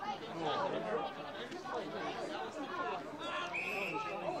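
Many voices of players and spectators calling out over each other, with a short, high umpire's whistle blast near the end as play is stopped after a tackle.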